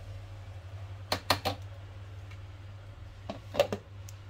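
Kitchen utensils knocking on a plastic blender jar as yogurt is spooned in and the lid is fitted: three quick clicks about a second in and three more near the end, over a low steady hum.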